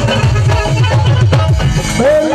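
Live Punjabi band music: an instrumental passage with strong drum strokes and no singing.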